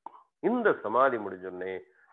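A man's voice speaking in a lecture, after a brief pause with a small click at the start.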